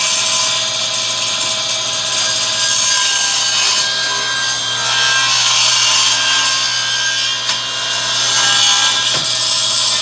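Small handheld circular saw running and cutting across the end of a glued-up hardwood board: a steady motor whine with the blade chewing through the wood throughout.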